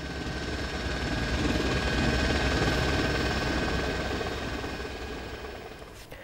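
Helicopter noise, a fast steady rotor beat under engine noise with a thin high whine, swelling toward the middle and fading out near the end.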